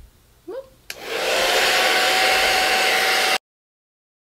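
Handheld hair dryer switched on with a click about a second in, then running on warm as a steady rushing blow with a faint whine, drying hairspray along a lace wig's hairline. The sound cuts off suddenly near the end.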